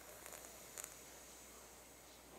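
Faint hissing of breath drawn in through a curled tongue (sitali pranayama inhalation), in two short pulls within the first second.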